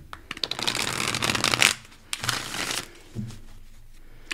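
A tarot deck being shuffled by hand: a fast run of card-on-card clicking lasting about a second and a half, then a second shorter run about two seconds in, before the shuffling quietens.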